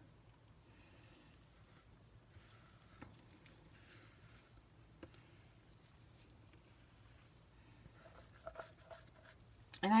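Near silence, with faint soft handling sounds and a couple of light clicks as thick soap batter is poured from a plastic bowl into a silicone-lined loaf mold.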